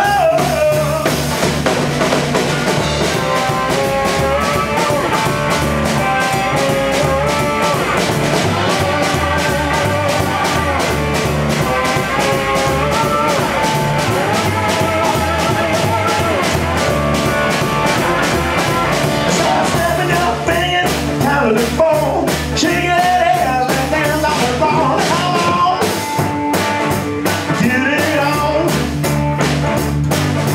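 Live blues trio of electric guitar, drum kit and double bass playing an instrumental passage without vocals, the electric guitar carrying the melody over a steady drum beat and bass line.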